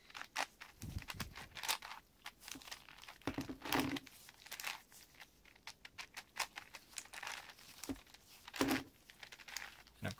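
Plastic layers of a large 8x8x8 Rubik's cube clicking and scraping as they are turned by gloved hands, in irregular bursts of small clicks with a few louder clacks about four seconds in and near the end.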